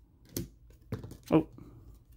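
Glossy trading cards being flicked off the stack and tossed onto the table: two sharp card snaps within the first second.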